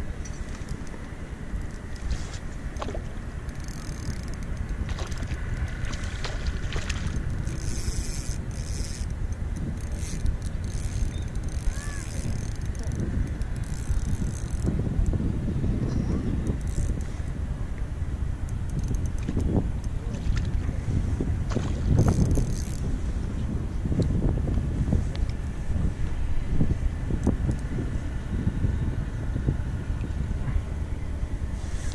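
Wind rushing over the microphone, with scattered splashes and brief hissy bursts, loudest a little past the middle.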